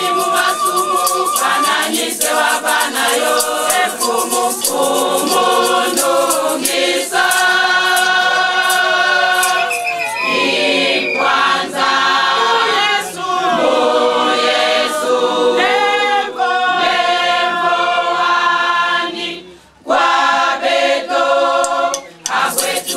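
A large women's church choir singing a gospel hymn together, with a tambourine and hand claps keeping a steady beat. The singing breaks off for a moment near the end, then starts again.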